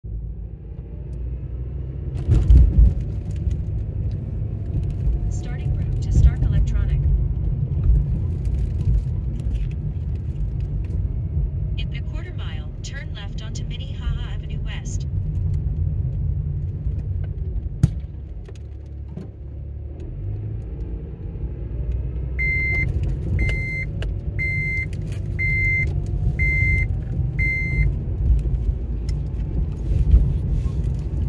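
Car cabin noise while driving slowly: a steady low rumble of engine and tyres, with occasional clicks and a brief rattle. Past the middle, an electronic chime beeps six times, about once a second.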